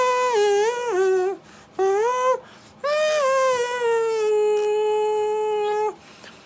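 A man's wordless, high-pitched falsetto voice: two short notes stepping down, a short rising note, then one long note held steady for about three seconds.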